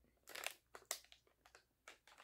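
Faint crinkling of a flavor-cartridge package being handled, as a few short, separate crackles.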